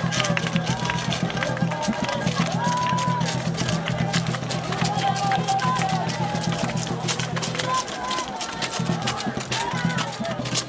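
Worship music with a lead voice singing and a heavy bass line, while a large crowd claps along in a quick regular rhythm. The bass drops out for a moment near the end, then returns.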